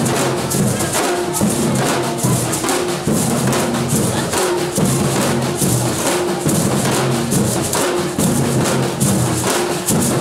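Percussion ensemble of drums and beaded gourd shakers (shekeres) playing a steady, driving rhythm, with dense shaker strokes over repeating drum tones.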